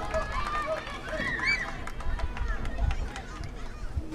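People's voices calling out across an outdoor soccer field, clearest in the first second and a half, with scattered faint clicks and a low rumble.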